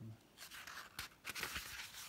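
Faint rustle of a paperback book's page being turned, with a few light paper clicks.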